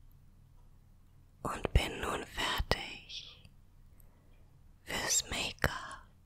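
A woman whispering two short phrases close to the microphone, with a few sharp clicks among the whispers.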